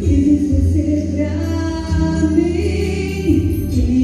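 A woman singing into a handheld microphone through a PA, holding long notes over amplified backing music with a steady bass.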